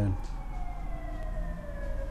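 A faint siren, its pitch falling slowly and steadily in one long glide.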